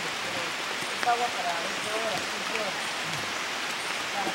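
A steady hiss of rain with faint voices talking in the background.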